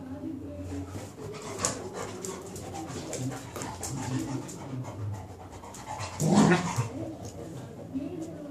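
A beagle and a cocker spaniel play-fighting, with rough, continuous low growling and snarling and one loud, harsh outburst about six seconds in.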